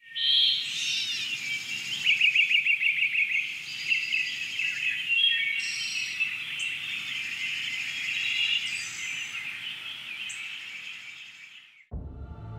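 Several songbirds singing and chirping together, with a fast trill about two seconds in. The chorus starts suddenly and fades away near the end.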